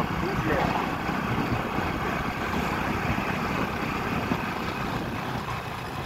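Steady rush of wind and road noise from a moving motorcycle, with wind buffeting the microphone.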